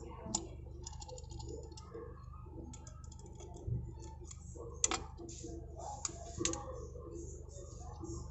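Scattered small clicks and taps of pliers working a metal pin in a car side-mirror's plastic pivot mechanism held in a C-clamp, with a few sharper clicks, over a low steady hum.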